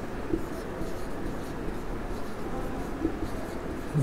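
Marker pen writing on a whiteboard: a string of short, faint strokes as an arrow and a word are drawn, over low room hum.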